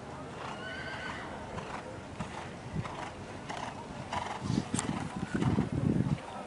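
A horse's hoofbeats on arena sand at the trot, a steady run of soft strikes, with a horse whinnying about a second in.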